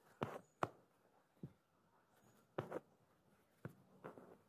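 Five or so short, quiet scratchy rasps of silk embroidery thread being pulled through fabric and lace stitches with a needle, as stitches are made one by one by hand.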